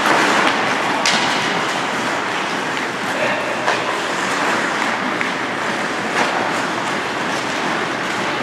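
Ice hockey play: skate blades scraping the ice as a steady noise, with a few sharp clacks of sticks and puck spread through.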